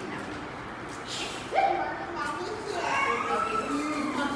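Young children's voices chattering and calling out, with one voice breaking in suddenly louder about a second and a half in.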